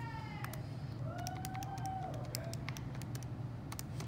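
Plastic keys of a TI-84 Plus graphing calculator being pressed, a run of sharp irregular clicks, several a second, as an expression is entered. A faint wavering hum sounds under the clicks in the first half.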